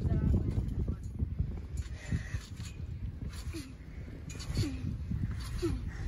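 A child bouncing on a trampoline: dull low thumps of the mat with a rumbling background, and a few short pitched vocal sounds in the second half.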